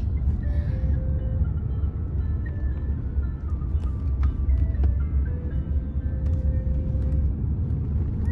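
Steady low rumble of a minivan driving at speed, heard inside the cabin, with a melody of music playing over it.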